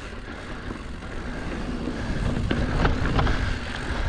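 Mountain bike rolling down a dirt singletrack: wind rumbling on the microphone over tyre noise, with a few sharp clicks and rattles from the bike over rough, rocky ground in the second half.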